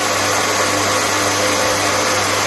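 UN6N40-LT mini rice mill running steadily on its 3 kW electric motor while whitening brown rice, a constant hum and hiss from the whitening head, with white rice streaming out of the chute into a plastic basin.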